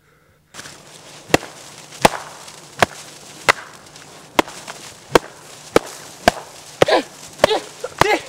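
A steady series of sharp, short knocks, about one every three-quarters of a second, starting after half a second of dead silence.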